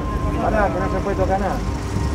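Mostly speech: a man's voice telling people they cannot pass or touch anything, heard over a steady low rumble of street noise.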